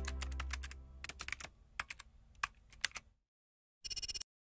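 Keyboard typing sound effect, irregular key clicks timed to text appearing letter by letter: quick at first, then scattered, with a quick run of louder clicks near the end. The tail of a low held musical chord fades out during the first second or so.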